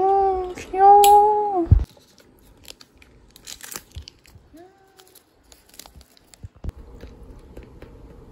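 A woman's long, drawn-out "wow" of delight, then faint scattered clicks and crinkles of items being handled, with one brief voiced sound about halfway through.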